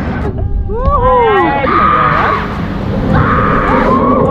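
Drop-tower riders letting out wavering, swooping cries and exclamations, with two short bursts of hissing noise in the second half.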